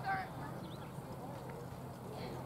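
Open-air ambience at a rugby league field: a short shouted call right at the start, then a lull with a low steady hum and a couple of faint knocks.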